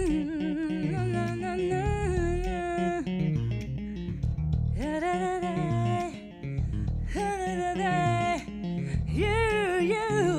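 A woman sings long wordless vocal phrases with vibrato over an electric bass guitar playing a bass line. There are four phrases with short breaths between them.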